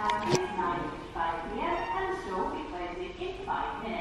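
Voices talking, not clear enough for words, in short phrases, with a single sharp knock about a third of a second in.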